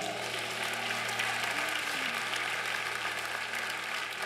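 Congregation applauding in a steady patter of many hands, over soft held keyboard chords that change once partway through.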